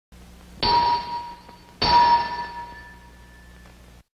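A metallic bell-like ding struck twice, a little over a second apart. Each strike rings with a clear tone and fades away, over a faint low hum.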